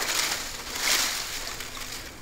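Water sloshing and splashing as a long-handled dip net is swept through a weedy pond, swelling about a second in.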